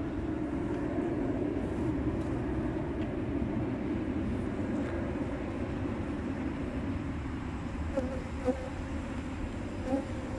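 Honeybee colony in an opened hive buzzing, a steady wavering hum of many bees.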